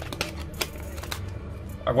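A few light plastic clicks and taps from handling a Mobicel Star phone, its back cover pressed on over the just-reinserted battery.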